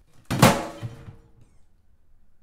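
A bundt cake dumped off a plate into a bag-lined plastic garbage can: one loud heavy thud with a short rattling, ringing tail, then a softer thump just under a second in.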